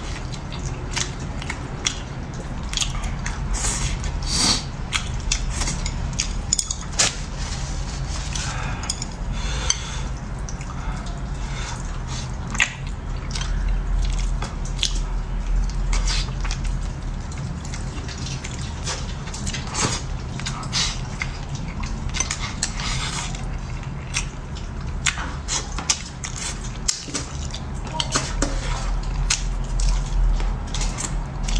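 Close-up chewing and wet mouth sounds of eating fish and rice, with frequent short clicks of wooden chopsticks against a ceramic bowl, over a low steady hum.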